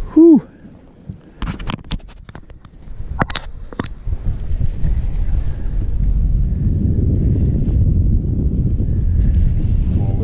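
Wind buffeting the microphone: a low rumble that builds from about halfway and then holds steady. A short laugh and a few sharp clicks come before it, near the start.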